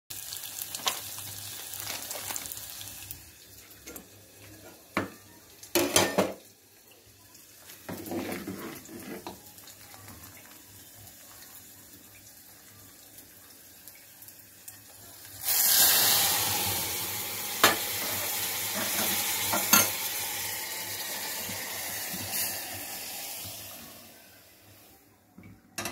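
Hot oil sizzling with a tempering of dried red chillies, green chillies and garlic in a steel pan, with a few sharp metal clinks. About fifteen seconds in, a sudden loud burst of sizzling as the hot tempering is poured into the dal, which keeps hissing with more clinks of metal until it dies away near the end.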